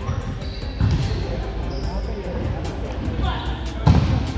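Indoor volleyball rally in a reverberant gym: the ball is struck, ending in a loud smack of a spike at the net just before the end, with music underneath.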